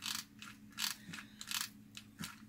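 Hot glue gun trigger squeezed three times, each squeeze a short rasping ratchet of the feed mechanism pushing the glue stick through.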